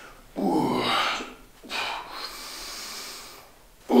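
A man breathing hard from the effort of a slow dumbbell chest exercise. About half a second in there is a short strained breath with the voice in it, then a long, steady breath out that fades near the end.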